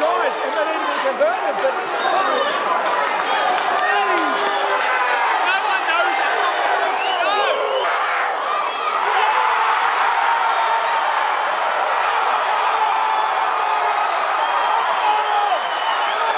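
Rugby stadium crowd shouting and cheering, many voices at once, swelling into a sustained roar about nine seconds in, with a man yelling close to the microphone.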